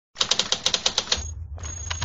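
Logo-intro sound effect: a quick run of about nine sharp, typewriter-like clicks in the first second, then a low hum with a thin high ringing tone.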